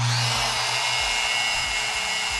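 Bosch GWS 9-125S 900 W angle grinder switched on with no disc fitted, spinning up and then running unloaded with a steady whine at its lowest speed setting, about 2,800 rpm.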